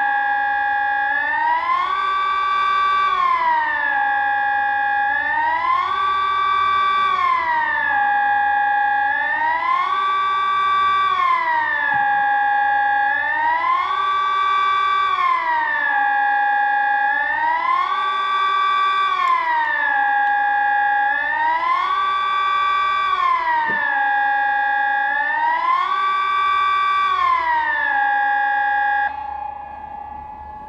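Sonnenburg SES 1000 electronic siren sounding the Swiss general alarm signal (Allgemeiner Alarm), which calls the public to switch on the radio and follow the authorities' instructions. It is a loud tone that glides up and down, about one rise and fall every four seconds. About a second before the end it stops suddenly, and its sound dies away.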